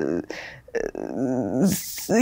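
A woman's voice making drawn-out wordless vocal sounds mid-sentence, a hesitation between phrases of a spoken question.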